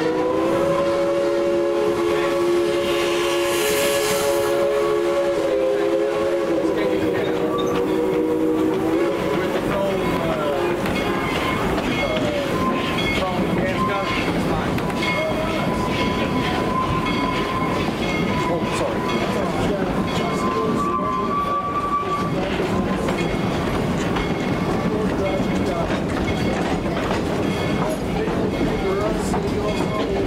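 A steam locomotive's chime whistle blows one long chord for about nine seconds, its pitch stepping down about six seconds in, over the steady rumble and clatter of the narrow-gauge train running. Once the whistle stops, the train runs on with brief, thin high-pitched squeals.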